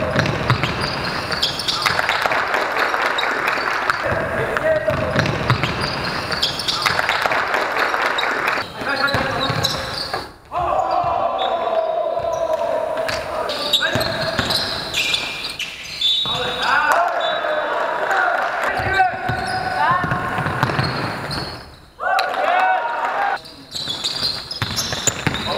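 Indoor basketball game in play: a basketball bouncing on the sports-hall floor, mixed with players' shouts and calls on court.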